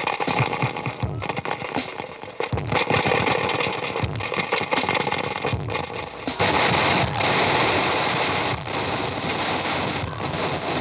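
Live harsh noise music played on electronic gear and effects pedals: choppy, stuttering blasts of distorted noise with short, repeated downward-swooping low tones, giving way about six seconds in to a steady, loud wall of hissing noise.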